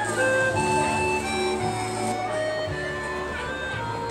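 Instrumental music playing over outdoor loudspeakers: a simple melody of short held notes stepping up and down over a bass line that changes every second or so.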